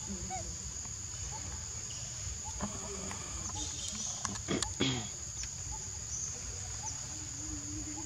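Steady high-pitched insect drone in the background, with a few sharp clicks or taps about four and a half seconds in and a faint low wavering call near the end.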